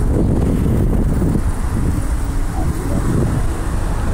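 Wind buffeting the phone's microphone: a loud, uneven low rumble with no distinct events.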